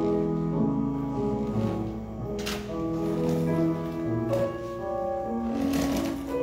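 Slow piano music, sustained notes and chords changing every half second or so.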